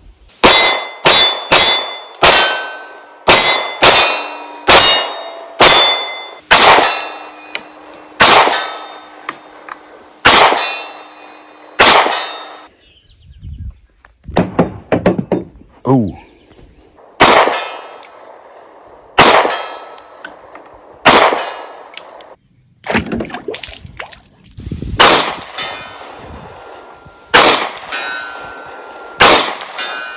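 Springfield Hellcat compact pistol fired in quick strings, about two dozen shots, each sharp report followed by a ringing tail. There is a pause of a few seconds about 12 seconds in, then the shooting resumes.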